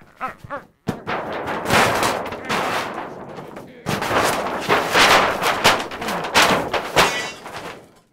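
Large sheet of seamless backdrop paper being ripped and crumpled. The tearing comes in two long, loud, ragged stretches with a short break between them.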